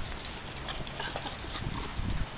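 Small dogs playing on grass: soft scuffling and patter of paws, a few faint short sounds over a steady outdoor background.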